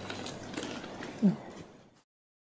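Faint outdoor rustling with light clicks, and a short voice sound about a second in, fading out to silence near the end.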